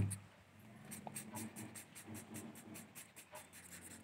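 A knock at the very start, then a pen scribbling on paper in quick back-and-forth strokes as an area is shaded in.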